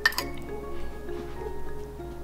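Two quick clinks of a metal spoon and fork against a ceramic bowl right at the start, over steady background music.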